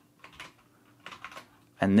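Computer keyboard keys being pressed: a few light clicks in two short clusters.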